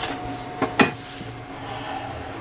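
Ceramic dishware clinking: two sharp knocks, the louder a little under a second in, then softer rubbing against the bowl.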